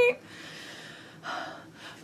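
A woman breathing audibly: a long soft breath, then a short, louder gasp of breath a little over a second in.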